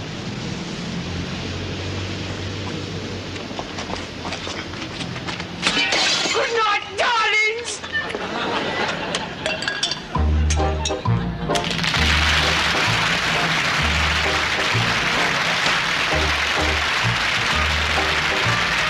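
Closing theme music starts about ten seconds in with a repeated bass line, and a studio audience's applause joins it a second or two later and keeps going. Before that there are some cracking or breaking sounds and a voice.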